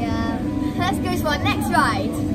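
Girls talking in lively voices with sweeping rises in pitch, over a steady hum.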